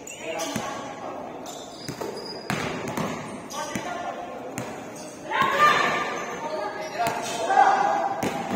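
Basketball bouncing on a hardwood gym floor: separate sharp knocks that ring in the large hall, with players' voices calling over them and getting louder about five seconds in.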